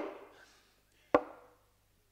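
A sharp knock about a second in, with the tail of a previous knock fading away at the start: a stage knocking effect.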